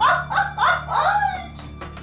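A woman laughing out loud, about four 'ha' laughs in quick succession that die away after a second and a half, over soft background music.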